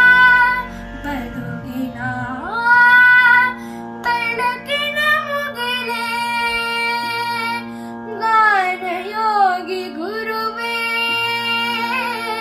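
A boy singing a Kannada song solo, holding long notes and sliding and wavering between pitches, over a steady drone.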